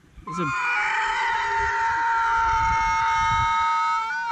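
Sheep giving one long, high, unbroken call, its pitch dipping slightly at the start and then held steady for about four seconds.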